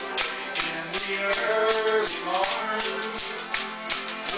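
Button accordion and acoustic guitar playing a lively traditional tune, with a Newfoundland ugly stick (a pole hung with bottle caps, struck with a stick) jangling out a steady beat of about three strokes a second.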